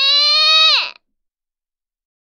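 A young woman's long, drawn-out high-pitched cry, held steady and then dropping away as it cuts off about a second in, followed by silence.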